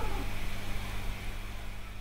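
Domestic cat purring in a low, steady rumble while being stroked.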